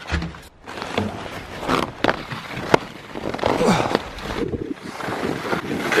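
Skis scraping and carving on packed snow during a fast run, with wind buffeting the microphone and a few sharp knocks.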